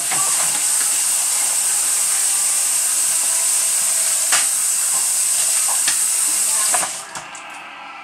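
Kitchen tap running into a stainless steel sink as a dish is rinsed under it, a steady hiss that cuts off suddenly about seven seconds in. A couple of sharp clacks come from the dish being handled.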